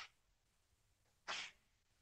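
Near silence, broken about a second and a half in by one short breathy puff of noise from a person.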